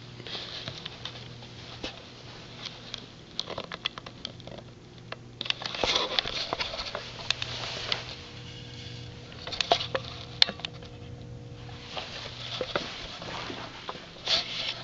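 Footsteps and camera-handling noise on a carpeted floor: scattered clicks, rustles and short scuffs, busiest about six seconds in and again near ten seconds, over a steady low hum.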